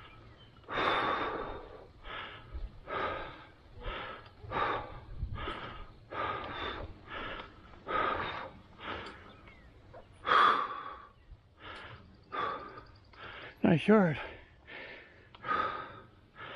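A person breathing hard and fast from exertion, with heavy mouth breaths repeating about once every second.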